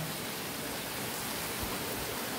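Heavy rain falling, a steady even hiss.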